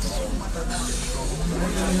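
Several people's voices in the open, one held on a drawn-out note near the end, over a low steady hum such as an idling vehicle.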